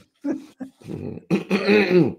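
A man laughing: a few short bursts, then a longer, louder laugh in the second half that trails off at the end.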